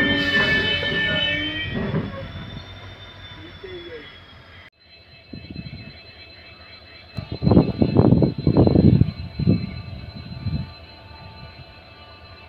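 Passenger train coaches running on the rails, heard from an open coach doorway: steady rolling noise that drops suddenly a little before halfway, then a cluster of loud clattering from the wheels a little past the middle.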